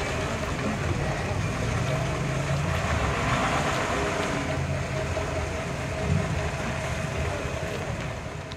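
First-generation Ford Mustang coupe's engine running at low revs as the car rolls slowly by, a steady low engine note.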